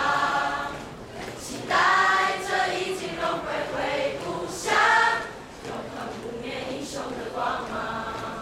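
A school class singing a patriotic song together as a choir, with two louder phrases about two seconds in and around five seconds.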